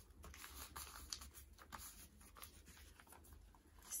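Faint rustling and light scattered ticks of a sheet of paper being smoothed by hand onto a glued cardboard cover.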